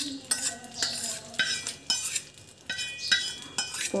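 Metal spoon stirring and scraping thick tomato pickle in a metal vessel, with repeated short scrapes and ringing clinks of spoon against the vessel, roughly two a second.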